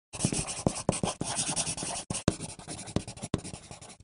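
A marker scratching across a whiteboard in quick drawing strokes, with several short sharp strokes and taps along the way. It fades toward the end.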